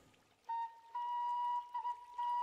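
Background music: a flute holds one long, steady high note that starts about half a second in, with a brief wavering ornament near the end.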